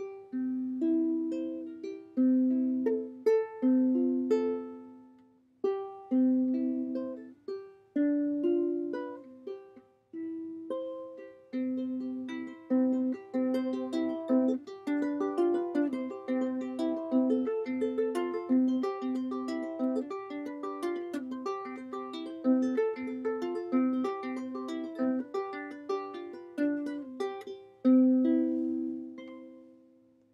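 Solid acacia koa concert ukulele played by hand. It opens with slow chords left to ring, with short pauses between them, then changes to a quicker, steady rhythmic strumming pattern about halfway in and ends on one long ringing chord. The instrument is a little out of tune.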